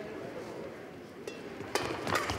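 Quiet indoor-hall background as a badminton rally opens, then a sharp crack of a racket striking the shuttlecock near the end.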